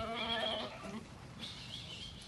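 Aradi goats bleating: one long, quavering bleat in the first second, then a thinner, higher call near the end.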